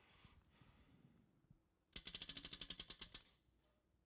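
Tabletop prize wheel spun by hand, its pointer flapper clicking against the pegs in a fast, even run of about a dozen sharp ticks a second. The run lasts just over a second, about halfway through.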